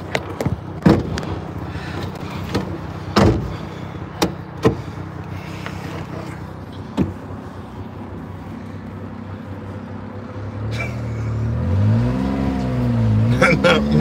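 A few sharp clicks and knocks in the truck cab, then, about ten seconds in, the small truck's engine, mounted behind the cab, picks up revs as it pulls away, its pitch climbing and dipping a few times as it goes through the gears.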